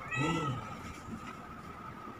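A cat meowing once: a short call, about half a second long, that rises and falls in pitch right at the start.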